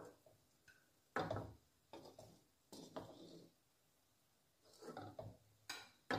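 About five short, soft knocks and plops, spaced unevenly. A metal spatula touches a non-stick frying pan, and small pieces of shaped chhena (rasmalai dough) drop into the water in it.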